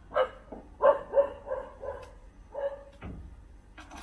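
A dog barking, a string of about six short barks in the first three seconds, with a click near the end.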